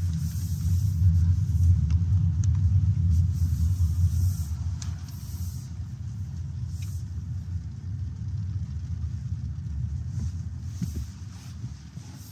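Low road and tyre rumble inside the cabin of a BYD Seal electric sedan as it drives, with no engine note; it is stronger in the first few seconds and then eases off.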